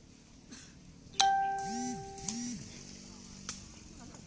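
A sepak takraw ball being kicked in play, sharp cracks about a second apart. The loudest crack, about a second in, is followed by a ringing chime-like tone and two short rising-and-falling swoops, which die away about a second and a half later.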